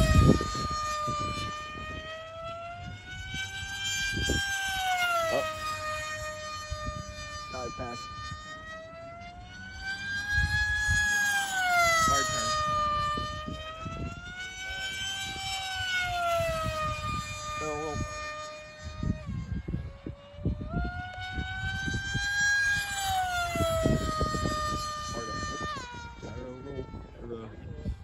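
An FMS Flash 850mm electric pusher-prop jet in flight: its motor and propeller whine, with the pitch rising and falling again and again every few seconds. The whine drops suddenly about two-thirds of the way in and again near the end.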